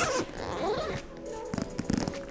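Zipper of a padded rolling equipment case pulled open in quick strokes, the pull giving a rising and falling zip. A few knocks follow near the end as the lid is swung back.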